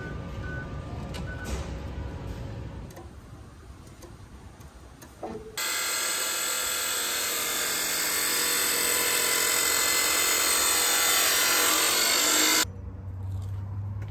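A chop saw cutting through a piece of steel: a loud, steady grinding cut of about seven seconds in the second half that starts and stops abruptly.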